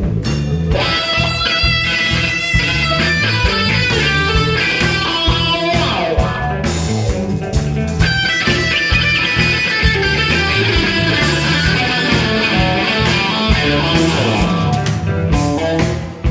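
Live blues-rock band playing an instrumental passage: electric guitar lead over bass and drums, with a note sliding down about six seconds in.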